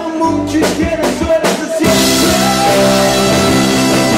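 Live rock band playing with electric guitar, keyboard and drum kit. A few sharp drum hits come in the first two seconds, then the whole band plays together from about two seconds in.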